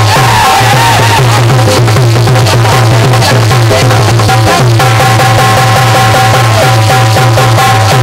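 Live instrumental folk-devotional music: a harmonium melody over a quick, even drum beat with a repeating low bass pulse.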